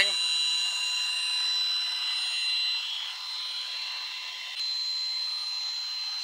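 Electric drill running at a steady speed with a high whine, spinning a Puch TF/SG engine's crankshaft to drive its oil pump on a test jig. A short click comes about four and a half seconds in.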